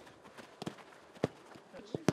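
Footballs being kicked on a grass pitch: several short, sharp thuds of passes, the loudest a little past a second in.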